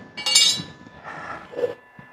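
A single short metallic clink with a bright, ringing tone, about a quarter of a second in, followed by faint handling noise.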